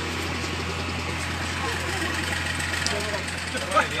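A diesel excavator engine running steadily under the talk of onlookers' voices, with one loud shout near the end.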